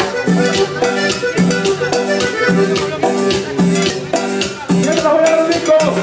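Live band playing upbeat Latin dance music: a quick, steady shaker-and-cymbal beat over repeating keyboard and bass chords.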